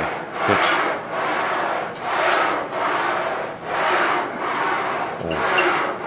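A man breathing hard in and out close to his clip-on microphone through a set of seated Smith machine shoulder presses, about one breath a second with the effort of each rep.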